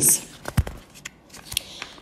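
A short pause in a woman's spoken narration: the tail of a word, then low room tone with a few faint clicks, about half a second in and again near the end.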